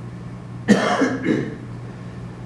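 A man coughing: a sharp cough about two-thirds of a second in, followed by a couple of weaker ones, over a steady low room hum.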